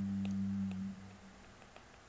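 A steady low hum that fades out about a second in, leaving near silence.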